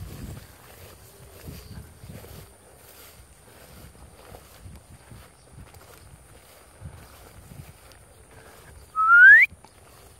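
Faint rustling through grass, then about nine seconds in a single short whistle sliding upward in pitch, much louder than the rest.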